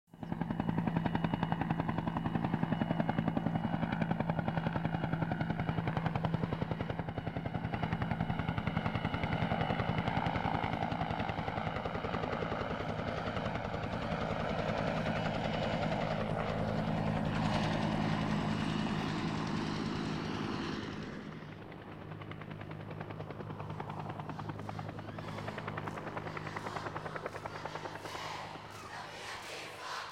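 Helicopter flying overhead: rapid, even rotor chop with a steady engine hum, starting abruptly, then dropping in level and growing duller about two-thirds of the way through.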